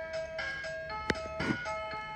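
Electronic toy activity centre playing its built-in tune: a simple melody of synthesized beeping notes. A sharp click a little past halfway.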